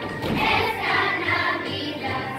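A group of children singing a Christmas song together over musical accompaniment.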